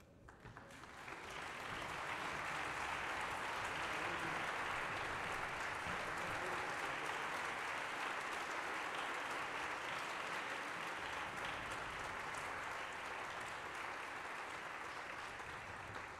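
Audience applauding in a concert hall, swelling in over the first couple of seconds, then holding steady and easing slightly near the end.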